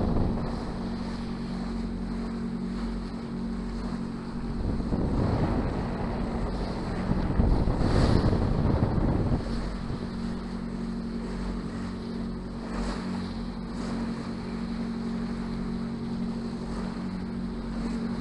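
A sailing yacht's engine runs steadily under way with a low, even hum. Wind buffets the microphone, strongest in gusts near the middle.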